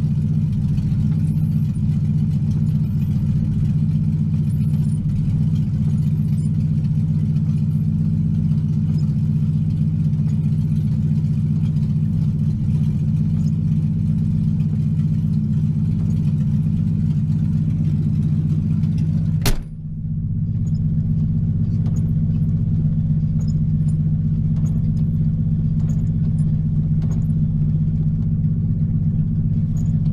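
Ford Mustang V8 idling steadily, with the windshield washer spraying and the wipers sweeping over it. About two-thirds of the way through there is one sharp click, after which the higher hiss drops away and the engine runs on.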